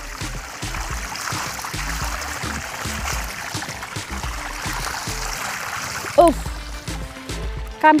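Water gushing and splashing from a leak in a broken drinking-water tank, with a cucumber being rinsed in the jet. It runs steadily for about six seconds.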